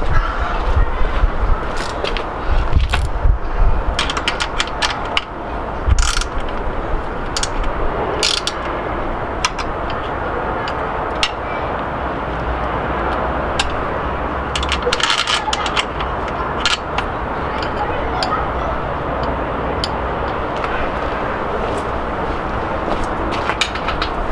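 Irregular clicks and light knocks from hands working a bicycle's rear wheel and axle in its dropouts while setting wheel alignment and chain tension. The clicks thin out after about two-thirds of the way through, leaving a steady background hiss.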